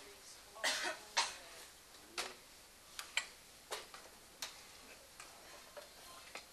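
A person's short breathy vocal bursts, like stifled coughs or held-back laughter, about a second in and again after two seconds. Several sharp light clicks follow, scattered through the rest.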